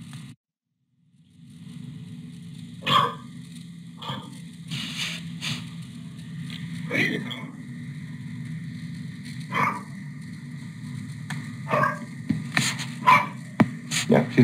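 Black Labrador retriever barking at a hole in the ground: a series of single barks spaced a second or two apart over a steady low background noise.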